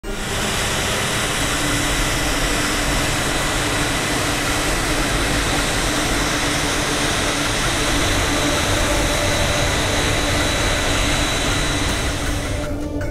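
Gulfstream III business jet's twin Rolls-Royce Spey turbofans running as the jet taxis: a steady loud rush of engine noise with a high, even whine over it.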